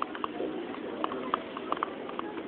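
Many footsteps of hard-soled shoes clicking on the terminal floor at an uneven pace, over a steady background murmur of a crowd.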